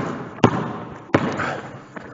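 A basketball dribbled on a hardwood gym floor: three bounces, a little under a second apart, each followed by a short echo of the hall.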